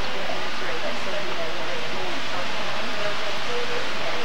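Faint, indistinct chatter of people in a shop over a steady rushing hiss that holds at one level throughout.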